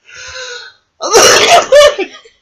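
Two women laughing: a short, breathy sound first, then loud laughter from about a second in.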